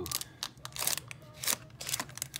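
Foil-wrapped Pokémon Base Set booster packs crinkling as fingers flip through them in their box, a run of short sharp crackles.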